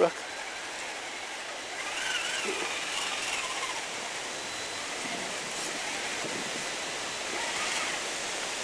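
Steady rushing of shallow stream water as a Traxxas Summit RC truck crawls through it.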